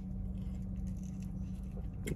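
Faint chewing and small crackly handling noises over a steady low hum.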